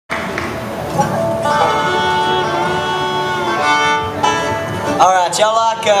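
String instruments of a bluegrass band (fiddle, banjo, mandolin, guitar, dobro) playing loose held notes between tunes, the pitches shifting every second or so. A man's voice starts to speak near the end.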